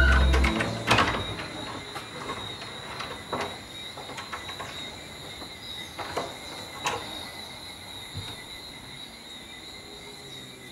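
Music fades out in the first second, leaving a steady high chirring of crickets. A few sharp clicks and knocks come over it, the loudest about a second in.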